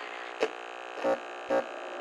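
A break in a hip-hop-styled pop song: a steady buzzing hum held on one pitch, with three short hits spread across it about half a second apart.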